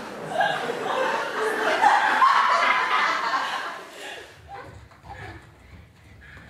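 Laughter from several people in an audience, which falls away sharply about four seconds in.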